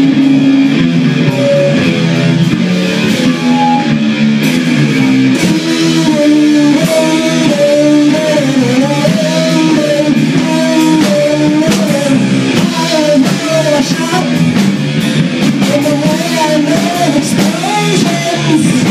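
A live rock band playing loudly: electric guitars holding low sustained chords while a higher guitar line bends up and down in pitch, over drums.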